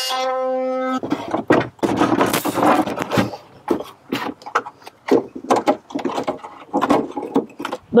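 A handheld power tool buzzing at a steady high pitch for about the first second as it cuts plastic out of the seat compartment, then stopping. After it come irregular knocks, scrapes and rustling as the inverter is handled and set into the plastic compartment.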